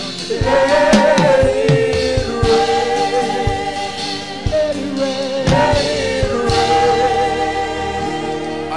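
A choir singing a slow gospel worship chorus in long held notes with vibrato.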